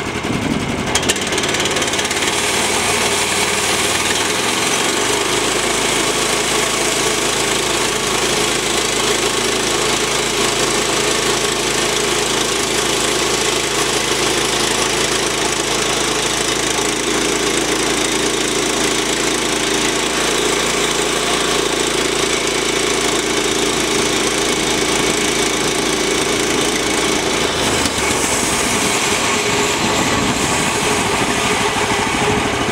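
Gas engine of a portable bandsaw sawmill running steadily, coming up to speed in the first second and shifting in pitch a few times, while the blade is fed slowly through a basswood log. The blade has missing and bent teeth and runs without water lubricant, and it is cutting poorly, throwing little sawdust.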